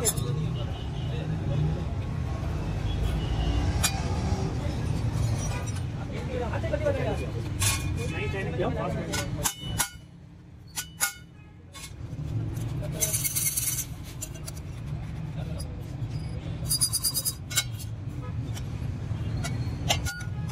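Wooden mallet tapping a thin sheet-steel muffler end cap on a stake in scattered light knocks, over background voices and a steady low rumble.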